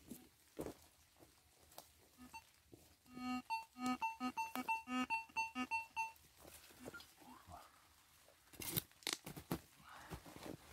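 Metal detector beeping as its coil is swept over a freshly dug hole, a run of short electronic tones at two pitches, about three a second for some three seconds: the detector signalling a metal target. Near the end a spade chops into the soil a few times.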